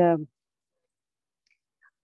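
A woman's hesitant "uh" at the start, then near silence with a faint click or two near the end.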